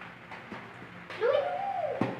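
A child's single drawn-out wordless vocal sound, like a hummed 'ooh', starting about a second in. Its pitch rises, holds briefly and falls.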